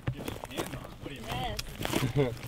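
Footsteps of boots pushing through brush and grass over twigs and woody debris, with short crunching and snapping steps; faint voices in the background.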